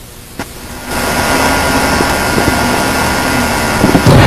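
A single click, then about a second in a loud, steady motor-like whirring noise starts abruptly and runs on evenly.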